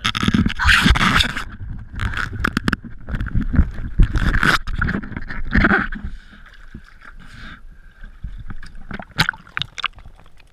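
Water sloshing and splashing around a diver moving at the surface against a boat's hull, heard through a waterproof camera housing. It is loud and uneven for about six seconds, then goes much quieter, with a couple of sharp knocks near the end.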